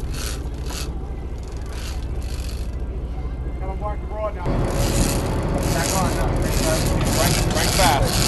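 Wind on the microphone over a steady low rumble on a fishing boat. About halfway through it gets louder, with a rhythmic rasping as an angler cranks a big-game reel against a hooked fish.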